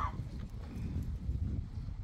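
Low, uneven rumble of background noise throughout, with a brief short rising sound right at the start.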